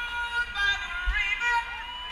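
A singer holding long, high notes. A low rumble runs underneath, like wind on the microphone.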